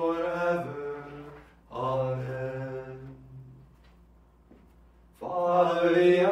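Male voice chanting liturgical prayer on long, held notes in phrases. It falls silent for about a second and a half a little past halfway, then resumes near the end.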